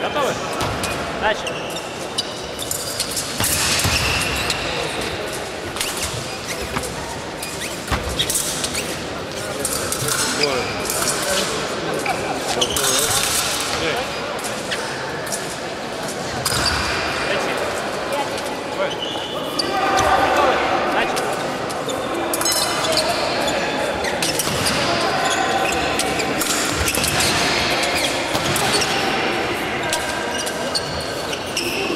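Fencers' footwork on a piste laid over a wooden floor: repeated thuds and stamps, with sharp clicks of blades meeting, echoing in a large hall. Voices talk in the background, clearest about twenty seconds in.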